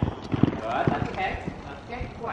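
Horse's hooves thudding on arena sand as it canters and jumps a fence: four dull thumps about half a second apart, the second the loudest.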